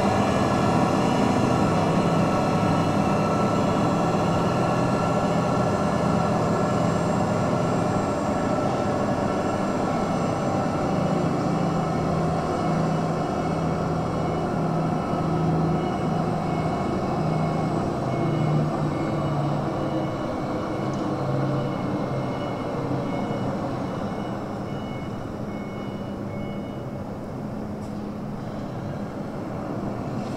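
Diesel engine of a 2022 Hongyan Genlyon C500 8x4 dump truck running steadily as the truck drives slowly around at low speed. The sound eases off gradually through most of the stretch and grows louder again near the end as the truck comes closer.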